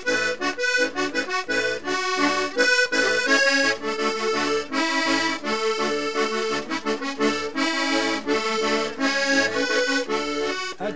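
Diatonic button accordion playing an instrumental vallenato passage in son rhythm, over a regular pulsing beat in the low end.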